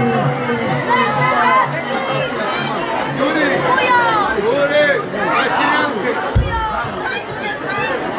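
Several voices talking and calling out at once over live band music, with a low repeating note under them in the first few seconds.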